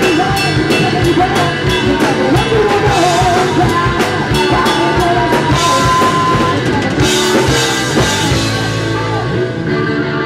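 Live rock band playing: electric guitar, bass and drum kit with a sung lead vocal, loud throughout.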